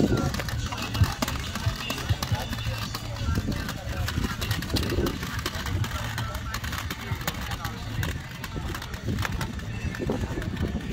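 Wind rumbling on the microphone, with indistinct voices in the background and scattered light clicks and knocks.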